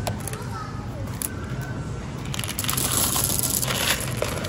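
Clear plastic bag crinkling and rustling as Jordan almonds are scooped from a bulk candy bin. The rustle grows louder in the second half, with a couple of small clicks from the bin lid and scoop before it.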